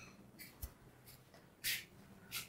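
Faint scuffs of sandalled footsteps on a tiled floor and newspaper rustling, with a soft thump about half a second in and one louder rustle near the end.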